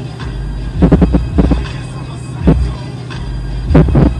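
Bass-heavy music played through a car stereo with twin 12-inch Sony Xplod subwoofers, heard from inside the cabin: deep thumps come in irregular pulses over a steady low hum.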